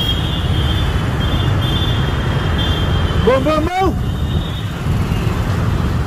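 Steady low rumble of road traffic at a busy intersection, with a faint high whine coming and going. About three seconds in, a person's voice calls out once, briefly.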